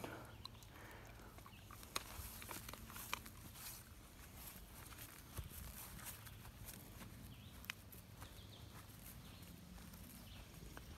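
Quiet outdoor background with a faint low hum, faint footsteps on grass and a few scattered soft ticks.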